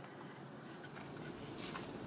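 Paper instruction sheet rustling as it is handled and laid down on a desk, soft and faint, with a few brief rustles in the second half.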